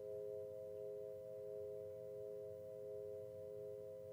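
Solfeggio meditation music: a chord of three steady, held tones with a faint low drone beneath, swelling and easing gently.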